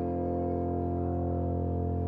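Keyboard holding the song's final chord, steady and slowly fading.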